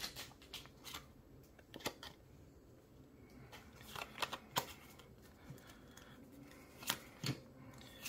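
Pokémon trading cards being handled and flipped through by hand: faint sliding and rustling, with a handful of sharp card flicks spread through.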